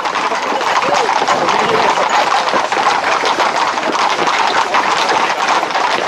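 Hooves of a tightly packed group of Camargue horses clattering steadily on a stony dirt track close by, with men's voices calling among them.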